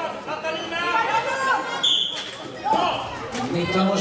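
Voices and chatter echo around a sports hall, cut by one short, shrill referee's whistle blast about two seconds in. The whistle stops play for a penalty, two minutes for slashing.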